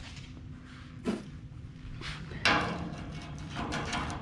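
Handling knocks of a magnetic welding square being set against a steel tube frame: a light tap about a second in, a sharper clack about two and a half seconds in that rings briefly, then a few quick ticks.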